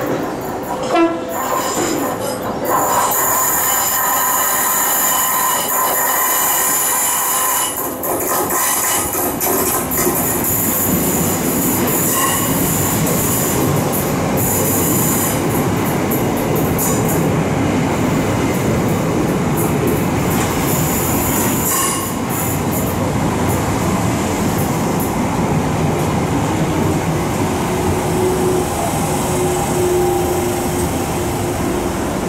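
Electric multiple-unit passenger train arriving alongside a station platform: wheels squealing on the curve for the first ten seconds or so, then the steady rumble of the carriages rolling slowly past, with a faint steady hum near the end as it slows.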